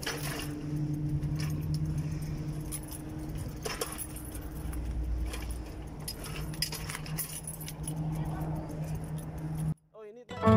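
Light jangling and scattered clicks over a steady low hum; the sound cuts off abruptly near the end.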